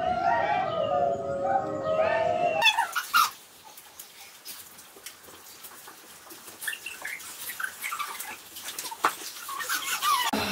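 High, wavering whining calls that bend up and down, howl-like, cut off abruptly about two and a half seconds in. Then faint scattered taps and shuffles of feet on a wooden floor.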